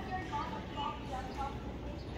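Indistinct voices talking in the background over a steady low rumble of ambient noise.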